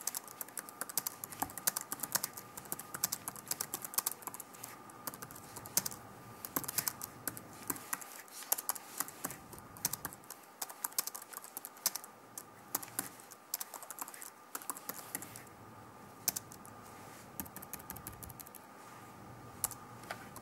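Typing on a computer keyboard: quick runs of key clicks broken by brief pauses, with a faint steady tone underneath.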